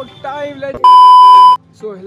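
A loud, steady electronic beep tone lasting under a second, cutting in abruptly about a second in and stopping just as abruptly, between stretches of a man's voice.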